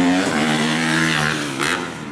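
Motocross bike engine running at a steady pitch for over a second, then fading away near the end.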